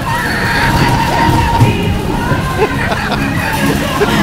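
Amusement ride music playing loudly under the hubbub and shouts of a crowd of riders, with a steady high tone running under it.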